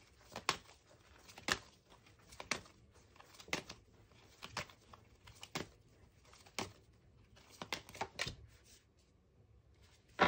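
A deck of tarot cards being shuffled in the hands, with a short crisp card slap about once a second and softer riffling between.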